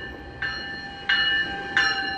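GO Transit bilevel commuter train passing at the platform, a steady rumble under a high ringing sound that comes in sharply about every two-thirds of a second, four times.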